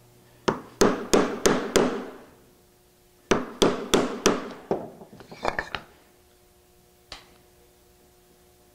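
Mallet striking a chisel to chop out the waste of a hand-cut through dovetail joint: two runs of about five quick blows each, then a flurry of lighter clicks and a single tap near the end.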